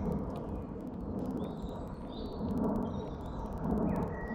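Small birds chirping now and then over a steady low rumble, with a couple of low swells in the rumble in the second half.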